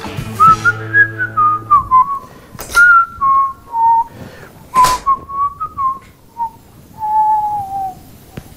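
A person whistling a wandering tune in short notes, with a couple of sharp knocks about three and five seconds in.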